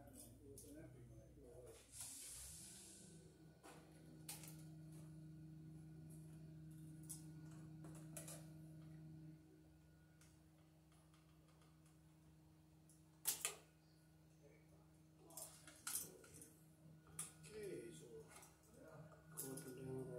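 Quiet handwork: scattered light clicks of a screwdriver on terminal screws at an electrical box, the sharpest about two-thirds of the way through. A steady low hum runs through the middle stretch and fades out before the end.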